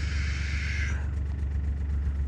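Side-by-side UTV engine running at a steady low rumble, with a soft hiss that fades out about a second in.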